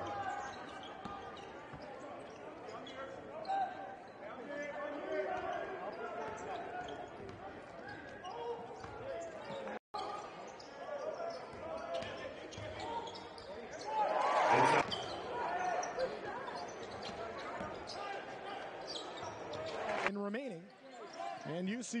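Basketball game sound in an arena: a ball bouncing on the hardwood court, with voices from the crowd and benches behind it. There is a brief louder burst of noise about two-thirds of the way through.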